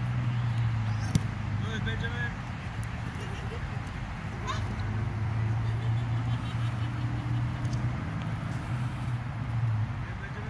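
Distant voices of children and adults calling out across an open field during a youth soccer game, faint and scattered, over a steady low hum.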